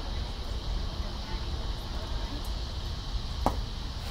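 Steady low rumble and hiss of ballpark background noise with a faint high steady tone, broken by one sharp knock about three and a half seconds in.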